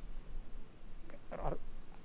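A pause in a woman's speech into a handheld microphone, with a steady low hum and a short voiced, breathy sound about a second and a half in.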